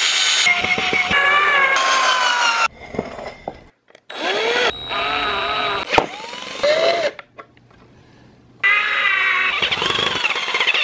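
Power drill driving screws through steel brackets into pine boards, in three bursts of a few seconds each. The motor's whine slides in pitch as the screws bite.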